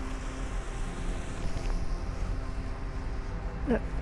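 Steady outdoor rumble of wind buffeting the microphone over constant street and traffic noise, with no distinct single event.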